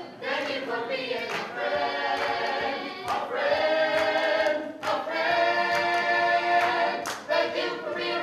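A group of voices singing in harmony, mostly holding long sustained chords, amplified through a microphone. Several sharp percussive hits cut through the singing.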